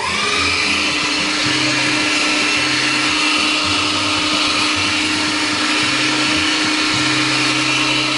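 Electric meat grinder (LEBEN) switching on, its motor whine rising briefly as it spins up, then running steadily as it minces chicken, onion and potato.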